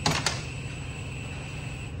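Two sharp clicks in quick succession at the start, from tools being handled at a workbench, then a steady low shop hum with a faint high tone.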